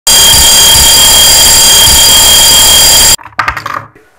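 Alarm clock ringing loudly and steadily, cutting off suddenly about three seconds in. A short burst of clattering and rustling follows.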